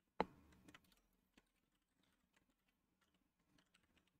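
Computer keyboard keystrokes: one sharp key press just after the start, then a few faint, scattered key taps.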